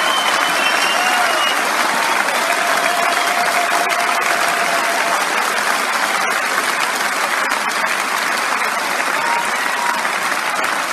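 A large hall audience applauding: a dense, steady clapping with a few voices calling out over it, easing slightly near the end.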